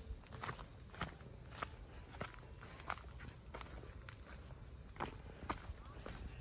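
Faint footsteps on a dirt path, a steady walking pace of a little under two steps a second.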